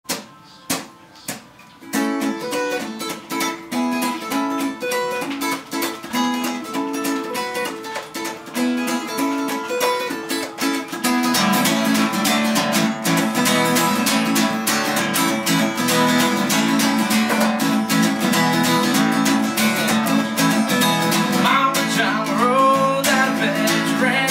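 Acoustic guitar played solo: a few clicks at first, then single picked notes from about two seconds in, turning to fuller, louder strumming about halfway through. A man's voice comes in singing near the end.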